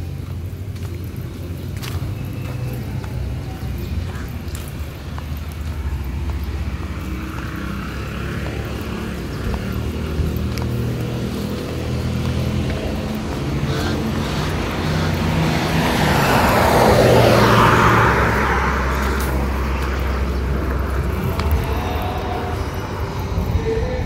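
Roadside traffic: a motor vehicle passes, its noise building to a peak about three-quarters of the way through and then fading, over a steady low rumble.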